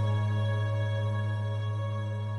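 Music: after the strumming stops, a held chord rings on with a steady low note and slowly fades.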